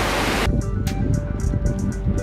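Rushing water noise from a dam outflow that cuts off suddenly about half a second in, followed by background music with sustained tones and light ticking percussion.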